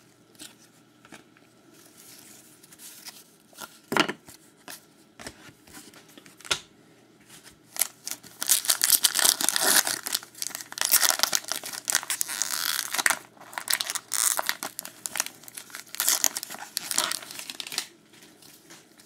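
Wrapper of a trading-card pack being torn open and crinkled by hand. A few light clicks come first, then dense crackling and tearing from about eight seconds in until shortly before the end.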